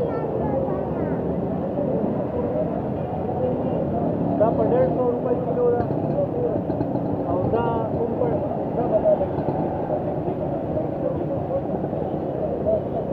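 Busy street noise: steady traffic rumble with people's voices talking in the background throughout.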